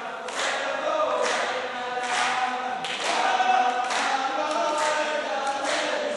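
A row of men singing a folk chant together, unaccompanied, with a sharp hand clap roughly once a second.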